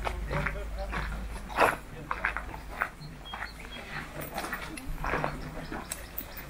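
Indistinct voices of people talking in the background, with a few short sharp sounds, the loudest about a second and a half in.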